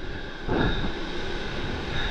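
Whitewater from breaking surf rushing and churning around a paddleboard, with wind rumbling on the microphone. A louder surge of water comes about half a second in.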